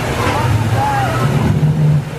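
Loud low rumbling from an animatronic crocodile display, swelling near the end as the crocodile's jaws open, over the steady rush of the display's waterfall.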